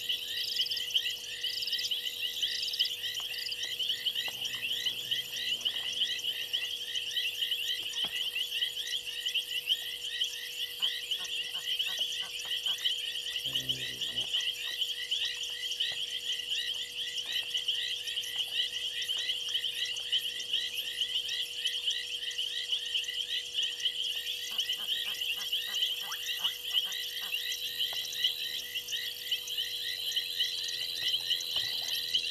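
A frog chorus at a waterhole at night: many frogs calling together in a dense, fast run of short high-pitched notes, with a brief lower call about halfway through.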